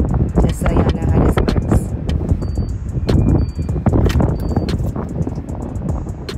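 Three short high beeps about a second apart from a street parking meter being operated, over a steady rumble of street traffic and clicks of handling noise.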